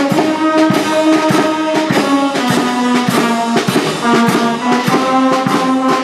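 Brass band playing a march: brass instruments hold and change notes over frequent, regular drum beats.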